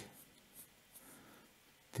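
Fineliner pen drawing a line on paper, a faint soft scratching as the tip moves along.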